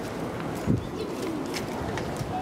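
A low cooing bird call over outdoor background noise, with a short, sharp thump about two-thirds of a second in.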